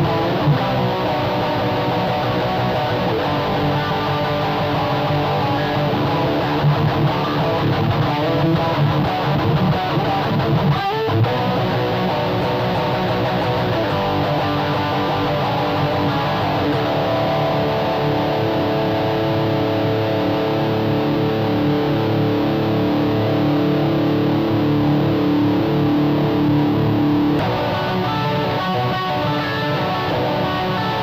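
Electric guitar playing a scratch part at 180 bpm, with notes held long through the second half and an abrupt change near the end.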